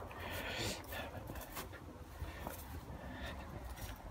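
Low steady rumble of wind and handling on a handheld phone's microphone while walking, with a few faint footsteps.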